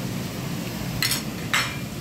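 A metal spoon stirring watermelon juice with ice in a glass pitcher, with two sharp clinks about a second in and a second and a half in.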